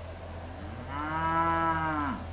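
A black Angus-cross yearling mooing once: a single call of about a second and a half that rises in pitch, holds steady, then drops away at the end.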